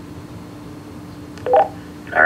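Steady hiss and a low hum from a Motorola XPR 4550 DMR radio's speaker between transmissions. About one and a half seconds in there is a sharp click and a brief, loud beep-like tone as an incoming digital transmission opens.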